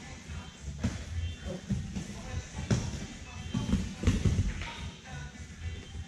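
Background music with a steady beat. Under it are the shuffle and thud of bare feet on foam grappling mats as two grapplers hand-fight and clinch for a takedown, with a few sharper thuds near the middle.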